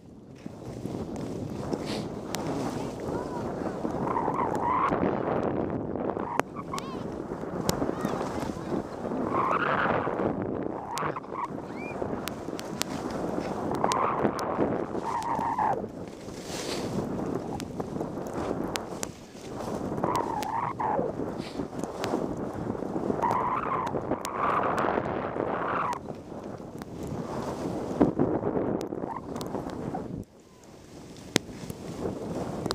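Skis sliding and scraping over packed snow, the scrape swelling and sweeping in pitch with each turn every few seconds, over steady wind noise on a helmet-mounted microphone.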